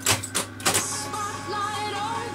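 Grundig TK 341 reel-to-reel tape recorder's transport keys clicking about three times as fast forward is worked, then music from the tape coming through its built-in speaker with a wavering pitch.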